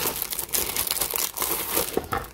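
Clear plastic wrapping crinkling and crackling as hands peel it off a cardboard kit box, in a dense run of small irregular crackles.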